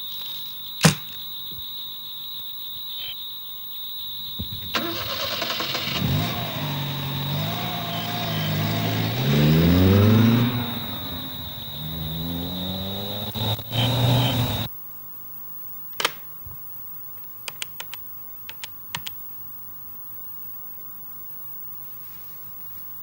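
Small car engine starting and pulling away, the engine note rising in pitch in a few steps as it accelerates, then cutting off abruptly about two-thirds of the way through. A few faint clicks follow.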